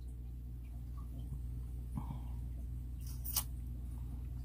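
Quiet room tone with a steady low hum, broken by a few faint small sounds and one short sharp click about three and a half seconds in.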